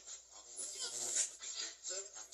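Ghost box app output played through a small amplifier speaker: choppy, rapidly switching snippets of voice-like sound and hiss that cut in and out every fraction of a second.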